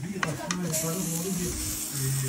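A few sharp clicks of a metal skewer and knife against an aluminium tray as grilled eggplant kebab pieces are pushed off, over a steady hiss, with a voice low underneath.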